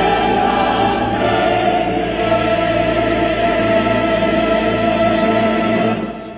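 Choral music with orchestra: a choir and orchestra hold one loud, long chord.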